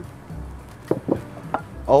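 Three light, quick knocks of kitchen items against a wooden cutting board and worktable, over faint background music.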